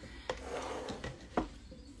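Faint rubbing and rustling from handling at the work table, with two light taps, one just after the start and one about a second and a half in.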